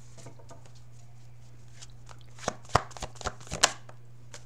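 A tarot deck being shuffled by hand: a quick run of crisp card snaps and slaps in the second half, over a steady low hum.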